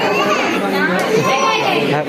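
Several people talking over one another in a room, with a small child's voice among the adult chatter.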